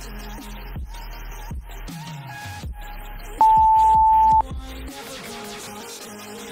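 Background hip-hop music with a heavy beat, and one loud, steady, single-pitch interval-timer beep lasting about a second, starting about three and a half seconds in: the signal that the work interval is over and the rest begins.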